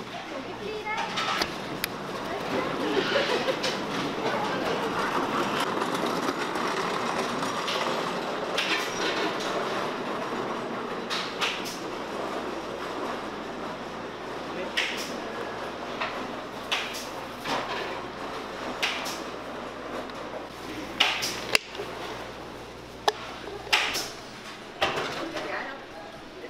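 A metal coconut scraper scraping soft flesh from inside a young coconut shell: irregular scrapes and a scatter of sharp clicks and knocks, more of them in the second half, over background voices.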